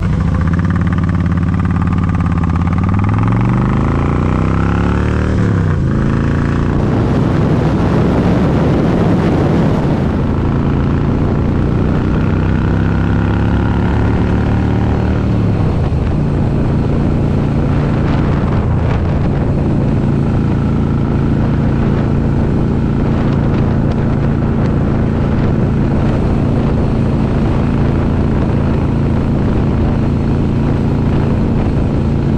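Harley-Davidson Ultra Classic's V-twin engine and loud exhaust under way on the road, with wind noise. The engine pitch climbs for a couple of seconds and drops at a gear change about six seconds in. It falls again about fifteen seconds in, then holds steady at cruise.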